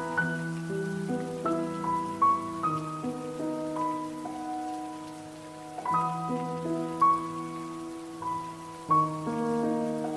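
Slow, calm solo piano playing sustained chords and a gentle melody, new notes struck every second or so, over a faint steady hiss.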